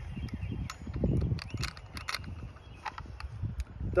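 Handling of a nylon alpine draw sling and its carabiners while an overhand knot in the sling is pulled tight: rustling with scattered light clicks and ticks.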